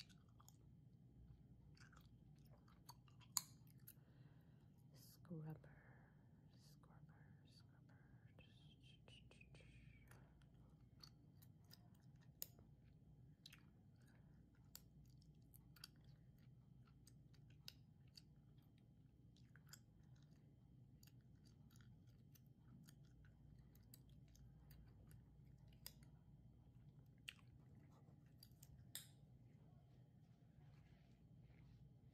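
Faint gum chewing close to the microphone: scattered soft clicks and smacks, one sharper click a few seconds in.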